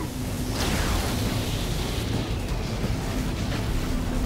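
Cartoon sound effects of a water jet and an electric beam blasting and clashing: a loud, steady rushing noise with deep rumble that thickens about half a second in, over background music.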